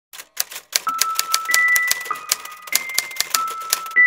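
Rapid typewriter keystrokes clattering at about six a second, with a few sustained bell-like notes ringing over them.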